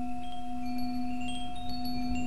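Sound-healing backing music: a steady low drone under scattered short, high chime notes.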